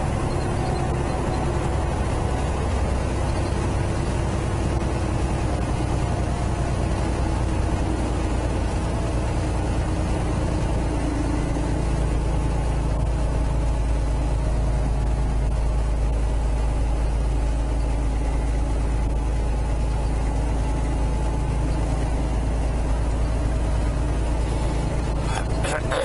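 Steady drone of a semi truck's diesel engine and road noise, heard from inside the cab while it cruises along a paved road.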